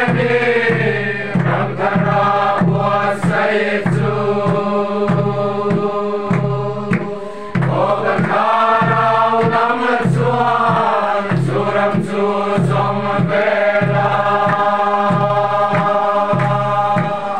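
A group of men and women singing a Mizo hymn together in long held notes, with a steady low beat about twice a second under the voices.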